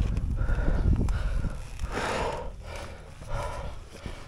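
A person breathing hard in short, ragged breaths, about one every half to one second, over a low rumble that is strongest in the first second and a half.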